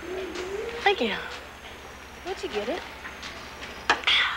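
A person's voice making drawn-out wordless sounds that glide up and down in pitch, over a steady low hum, with a sharp click just before the end.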